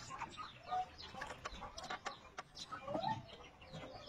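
Chickens clucking in short calls, mixed with scattered light knocks.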